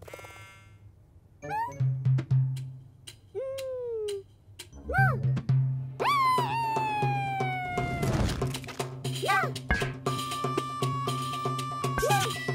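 Cartoon music with comic sound effects: quick percussion hits and short pitch swoops, a long falling glide, a noisy crash about eight seconds in, then a steady music bed with drums.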